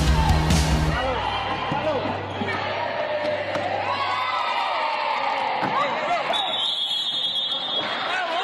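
Players' voices calling out in an indoor sports hall after music cuts off about a second in. Near the end a referee's whistle gives one long, steady blast.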